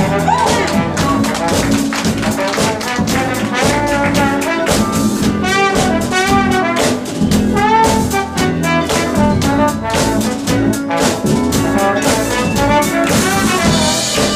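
Live band playing jazzy soul music, led by a horn section of trumpet, trombone and saxophone over a drum kit beat.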